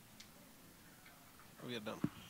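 Handheld microphone being passed from hand to hand over low room tone: a faint handling click a fraction of a second in, then a faint off-mic voice near the end.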